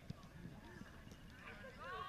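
Distant, indistinct shouts and calls of players and spectators across an outdoor soccer field, heavier in the second half, with a faint sharp knock just after the start.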